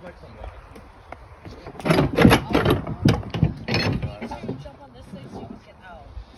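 A person's voice, loud and close, in short bursts from about two seconds in, then fainter voices.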